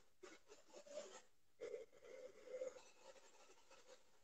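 Near silence, with a few faint short sounds.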